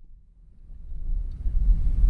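Low steady rumble inside a pickup truck's cab, fading up from near silence over the first second or so.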